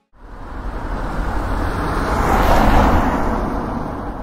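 A swelling whoosh of noise with a deep rumble, building from nothing to a peak about two and a half seconds in and then fading away, like a car passing by: an editing transition sound effect.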